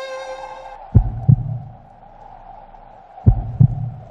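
Heartbeat sound effect: two low double thumps (lub-dub), the second pair about two seconds after the first, over a faint steady hum. Bowed-string music fades out in the first second.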